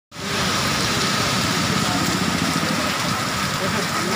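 Moderate rain falling steadily on a road and open ground, a continuous even hiss.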